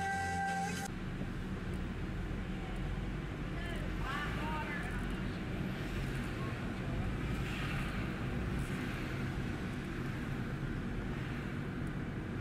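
Car driving in traffic: steady low road and engine rumble, with a few short bits of faint voice about four seconds in.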